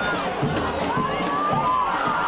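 Football stadium crowd shouting and cheering, many voices rising together as an attack closes in on goal.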